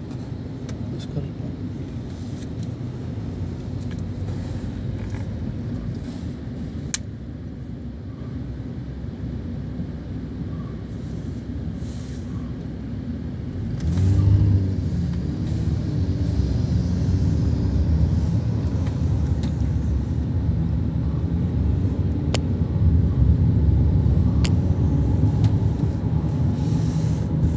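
Car road and engine noise heard from inside the moving vehicle: a steady low rumble that grows louder about halfway through and stays louder to the end.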